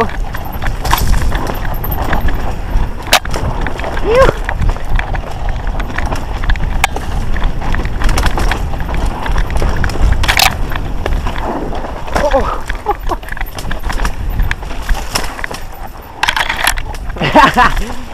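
Mountain bike descending a loose dirt trail, heard from a helmet camera: a constant rumble of wind and tyres on dirt, with frequent rattling knocks from the bike over the rough ground. A few short vocal sounds from a rider, the clearest near the end.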